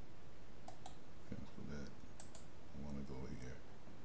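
Computer mouse clicks, a few quick pairs about one second and two seconds apart, with a man muttering under his breath between them.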